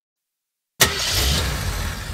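Silence, then about three-quarters of a second in a cartoon car-engine sound effect starts suddenly and runs on as a low, steady engine rumble.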